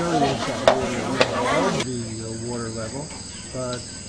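Crowd chatter at an outdoor market, with two sharp clicks. Just under two seconds in, the sound changes abruptly to steady high insect chirring, with a few voices over it.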